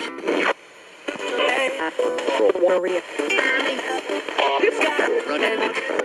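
Radio-sweeping spirit box jumping between stations, giving choppy snatches of Christmas music and voices, with a brief drop-out about half a second in. Bells and a voice saying "Santa" are heard in it, taken as a reply to the question just asked.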